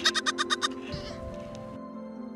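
A young goat kid bleating once in the first moment: a short, fluttering call of about seven quick pulses. Soft background music plays throughout.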